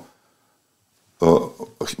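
A man speaking, with about a second of near silence in the middle before he goes on.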